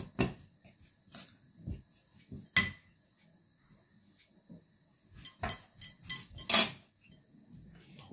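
A spoon clinking and scraping against a bowl while stirring dry flour and spice powder together. A few sharp clinks come near the start, one about two and a half seconds in, and a cluster between about five and seven seconds in, with a lull between.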